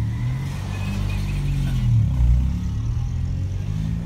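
Toyota car's engine heard from inside the cabin, pulling under light throttle, its pitch shifting up and down as the car is driven through a turn, loudest a little past the middle.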